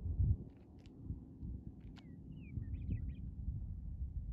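Wind buffeting the microphone in uneven gusts, strongest right at the start. A bird gives a short run of quick, sliding chirps a little past halfway.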